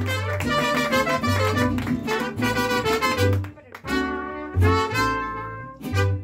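Mariachi band with trumpets over a pulsing bass line, playing a brisk instrumental flourish. It breaks off briefly a little past halfway, then lands on a long held chord near the end.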